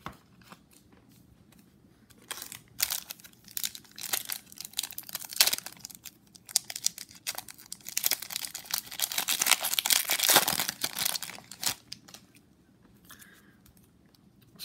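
A foil baseball card pack being torn open and its wrapper crinkled by hand, in a run of irregular crackling rustles that is densest and loudest about eight to eleven seconds in.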